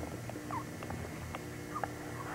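A baby making two small, short squeaks close to the microphone, with a few faint clicks.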